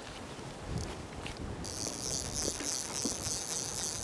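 Quiet outdoor ambience on a river: low wind and water noise with a few light knocks. A steady high hiss switches on abruptly about one and a half seconds in.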